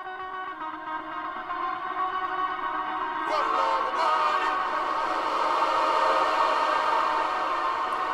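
A funk guitar sample smeared by the Valhalla Supermassive reverb-delay plugin (Great Annihilator mode) into a dense ambient wash of sustained, echoing tones. About three seconds in, the wash thickens and grows louder.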